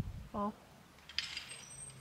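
A short spoken call, then about a second in a brief, sharp mechanical clack with a short rattle: the moment of release just before a black-powder shot at a clay target.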